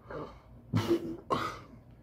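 A man coughing twice in quick succession, two short harsh bursts about half a second apart, after a small throat sound.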